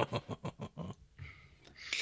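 A person laughing in quick, breathy bursts, about eight in the first second, then a long breath in.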